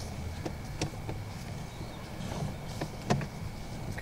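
Sewer inspection camera's push cable being pulled back through the line: a steady low hum and a faint high tone, with a few sharp clicks.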